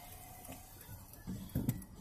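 Faint, steady low rumble of a car moving, heard from inside the cabin, with a couple of short clicks near the end.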